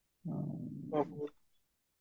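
Speech only: a drawn-out hesitant hum followed by a short 'uh' ('음, 어').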